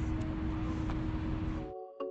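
Wind rumbling and buffeting on the phone's microphone at the shore, with a steady low hum under it. It cuts off abruptly near the end, and soft outro music begins.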